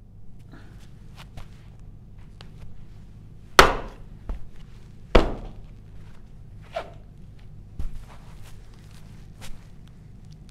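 A shoe stamping on a pair of Rockrider ST100 polycarbonate sunglasses on a carpeted floor: two heavy thuds about a second and a half apart, followed by a few lighter knocks. The lenses do not shatter.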